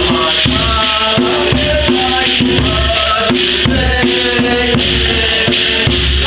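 Live traditional music: a goblet-shaped hand drum beaten in a steady beat of about two strokes a second, under voices singing through a microphone, with a shaken rattle-like jingle.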